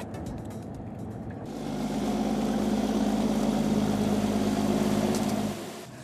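Machinery on a fishing boat: a fast, even ticking for about the first second and a half, then a steady motor drone that starts suddenly and stops shortly before the end.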